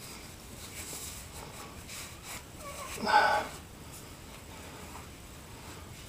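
Faint rubbing of a cloth rag wiping up a work surface, with a short breath or sniff from the person about halfway through.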